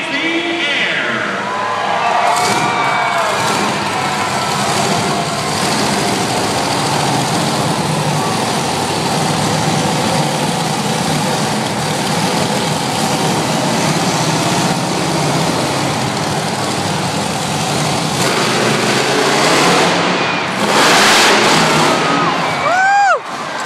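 Monster truck engine running loud and revving as the truck drives over crushed cars, with a louder surge near the end.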